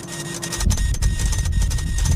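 Robotic toilet's built-in printer running, feeding out a printed slip of paper with a rapid, rattling mechanical chatter that starts about half a second in.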